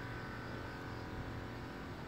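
Steady outdoor background noise with a faint low hum and no distinct sound events.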